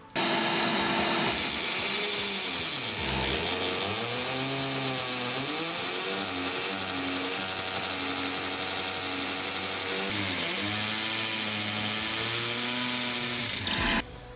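An electric drill boring 8 mm holes into a plaster kitchen wall, its motor pitch sagging and recovering several times as the bit bites. A handheld vacuum held at the hole runs alongside with a steady high whine, sucking up the drilling dust. Both start abruptly and stop abruptly near the end.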